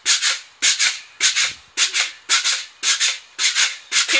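Pogo stick bouncing on a concrete sidewalk in a steady rhythm: two quick rasps with every bounce, about seven bounces.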